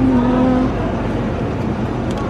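Steady rumble of supermarket background noise beside open refrigerated display shelves, with a short held tone in the first moment.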